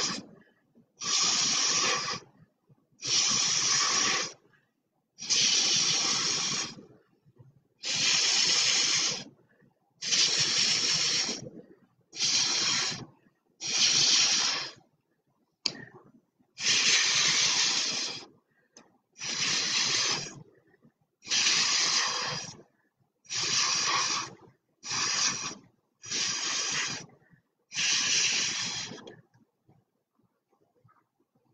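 Breath blown hard through a drinking straw onto wet acrylic paint, pushing the paint across the canvas: a hissing rush of air, repeated in about fifteen puffs of a second or so each, with short pauses for breath between.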